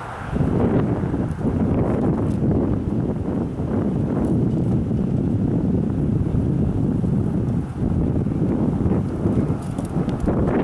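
Wind buffeting the camera microphone: a loud, uneven rumble that starts abruptly just after the start and carries on throughout.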